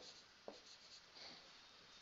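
Faint scratching of a felt-tip marker writing numbers on paper, with a light tap about half a second in.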